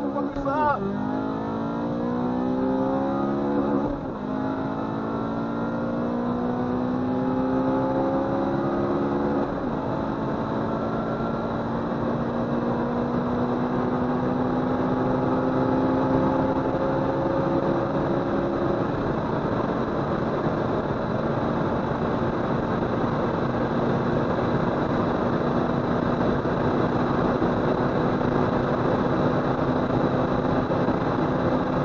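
Honda Civic Si's 2.0-litre K20Z3 four-cylinder engine at full throttle, heard from inside the cabin. It revs up and drops at gear changes about 1, 4 and 9 seconds in, then climbs slowly in a high gear and holds steady from about two-thirds through as the car nears its top speed of about 135 mph, with loud wind and road noise throughout.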